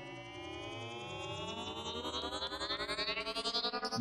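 Synth riser effect: a dense cluster of tones gliding in pitch, most sweeping upward and some falling, swelling steadily in level.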